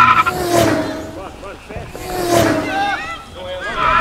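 People yelling: high-pitched, drawn-out shouts that rise and fall in pitch, loudest near the start and again about two and a half seconds in.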